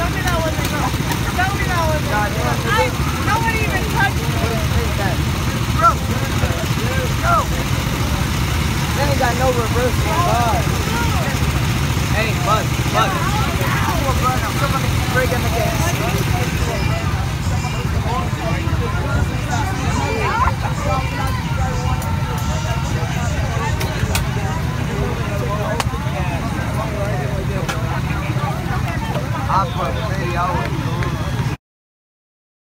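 Go-kart engines running with a steady low drone, with people's voices chattering over it.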